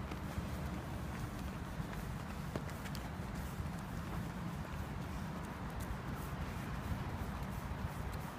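Footfalls of several people jogging on asphalt, over a steady low rumble.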